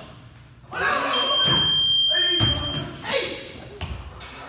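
Pickup basketball game in a gym: players shouting, with two thuds of the ball or bodies hitting the wall or backboard, one about halfway through and one near the end. A steady high-pitched beep sounds through the middle.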